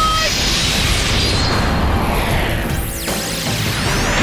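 Cartoon fight-scene soundtrack: dramatic music under a loud, sustained rushing sound effect for the villain's final-blow attack, with a short cry right at the start and sweeping swoosh-like glides near the end.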